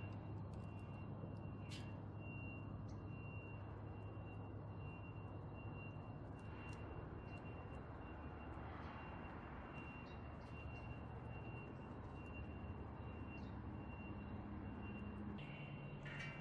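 Faint steady background ambience: a low hum and a thin high whine, with a few faint clicks.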